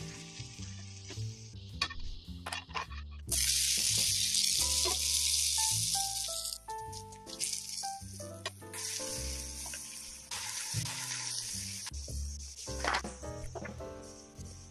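Shredded potato sizzling in hot oil on a cast-iron pan: a loud sizzle starts suddenly about three seconds in and lasts a few seconds, then comes back softer. Background music plays throughout.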